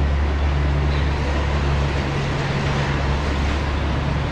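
Cable car station machinery running: a steady low hum and rumble from the drive and the turning bull wheel that moves the gondolas through the terminal.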